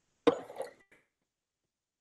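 A single short cough from a man, about a quarter second in, on a video-call line.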